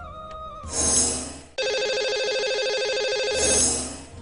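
Electronic telephone ring: a short steady tone, then a whoosh, then about two seconds of a rapid warbling ring, ending in another whoosh. It cues a call being placed to a phone-in caller.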